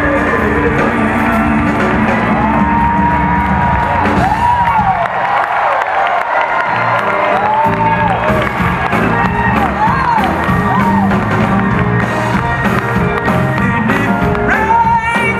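A woman singing gospel live with a backing band, holding long notes that swoop up and down. The band's low end drops away for a couple of seconds about five seconds in, then comes back.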